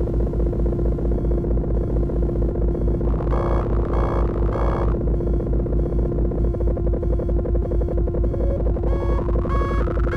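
A patch-cable DIY analog synthesizer playing a drone: a steady held tone over a fast, even low pulse. Three short higher bursts sound around the middle, and stair-stepped bleeping tones rise near the end.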